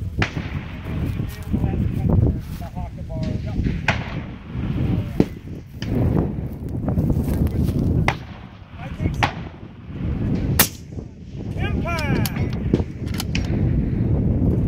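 Precision rifle fired several times, each shot a sharp crack a second or few apart, over a low wind rumble on the microphone.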